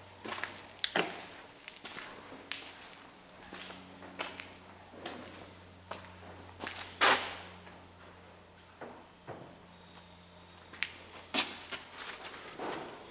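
Slow, irregular footsteps and shoe scuffs on a concrete floor, with one longer, louder scuff a little past halfway, over a faint steady low hum.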